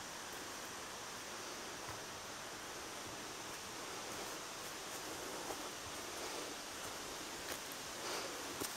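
Footsteps rustling through leaf litter and low plants on a woodland trail, faint over a steady hiss, with a few soft ticks.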